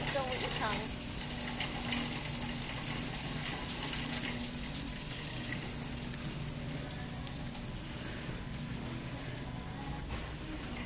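Indoor ambience of a large retail store: a steady hum under a constant wash of noise, with distant, indistinct shopper voices. In the first second there is a short falling glide.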